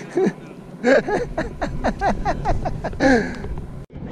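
A man laughing in a run of short bursts that fall in pitch, over a low wind rumble on the microphone; the sound breaks off suddenly near the end.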